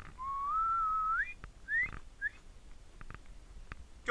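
A person whistling: one long note that rises sharply at its end, followed by two short upward whistles.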